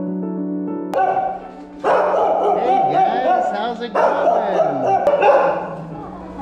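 A pack of dogs barking and yipping excitedly all at once, really loud, starting about two seconds in after a second of background music.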